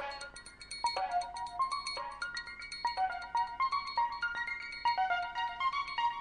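Electronic dance music: a bright synth melody of quick, short notes stepping up and down, thin with little bass.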